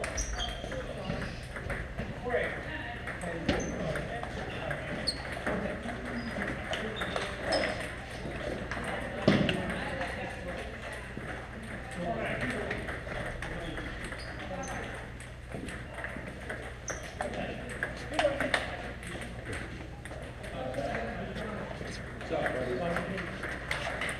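Table tennis balls clicking off paddles and tables in irregular rallies at several tables, with short high pings. The loudest single click comes about nine seconds in.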